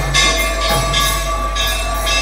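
Kirtan accompaniment between sung lines: hand cymbals (kartals) striking in a steady beat, about three a second, over a held harmonium drone, with a constant low electrical hum.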